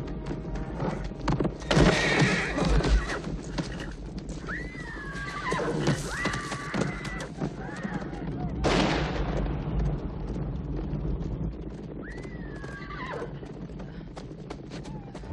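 A horse whinnying, a few calls in the middle and another near the end, over film music and a steady low rumble. A loud rush of noise comes about two seconds in and again about nine seconds in.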